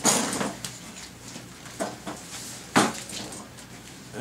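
Handling noise from a large cardboard band saw box being shifted on a hand truck: a short scraping rustle at the start, then a couple of knocks, the sharpest and loudest one near the end.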